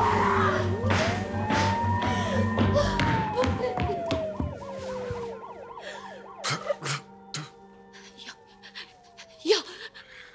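A siren wailing in slow rises and falls over a music bed, which stops about three seconds in. Several short sharp sounds follow in the second half, the loudest near the end.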